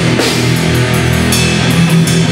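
Heavy metal band playing live: electric guitar, bass guitar and drum kit together, loud and steady, with cymbal crashes near the start and again past the middle.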